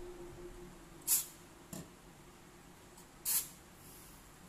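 Aerosol can of Tekoro waterproofing spray fired in two short hissing bursts, about a second in and again about three seconds in, with a light click between them.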